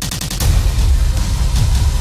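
Action trailer sound mix: a rapid burst of automatic gunfire at the start, then a loud low boom under heavy, bass-laden score music.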